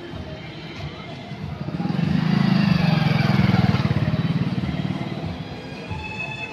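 A motorcycle engine passing close by: a low, fast-pulsing engine note that swells over about two seconds, stays loud for a moment, then fades away.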